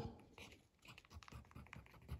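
Faint, irregular scratches and ticks of a scribing tool's point on watercolour paper.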